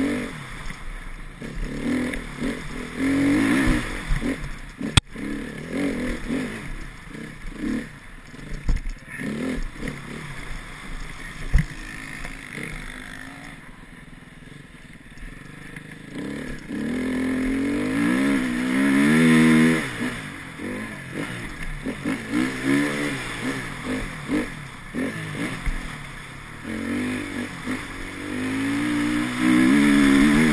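Enduro motorcycle engine recorded from the rider's helmet, revving up and dropping back again and again through gear changes. Near the middle it falls quiet for a few seconds off the throttle, then climbs hard again twice. A sharp knock comes about five seconds in.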